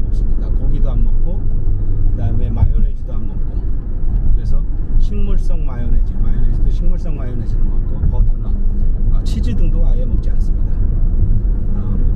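Steady low road and engine rumble of a car driving, heard from inside its cabin, with a man talking over it.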